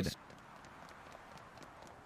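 Faint, quick running footsteps from the anime's sound effects, heard as light irregular taps over a soft hiss, with a man's voice trailing off at the very start.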